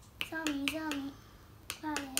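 Xylophone bars struck with mallets, a few quick notes in two short phrases with a pause in the middle, while a young girl sings the tune along with them.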